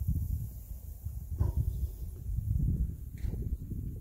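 Low, irregular rumble of wind buffeting a phone's microphone outdoors.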